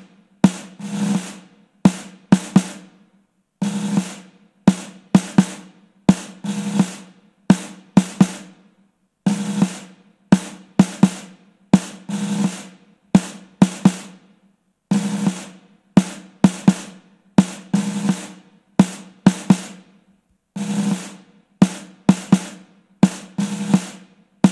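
Military snare drum beating a march cadence: a short roll followed by a few sharp strokes, repeating every two to three seconds.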